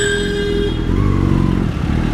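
Motorcycle engine running under way, heard from the rider's seat, with a vehicle horn sounding one steady beep that cuts off suddenly less than a second in.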